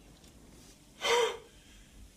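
A person gasps once, a short breathy intake with a little voice in it, about a second in; the first second is quiet.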